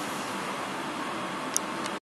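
Steady background hiss of room tone, with a brief click about one and a half seconds in.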